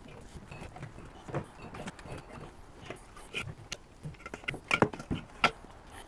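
Scattered light knocks and clinks of aluminium beer cans being handled and set down into a soft cooler, a few sharper knocks past the middle.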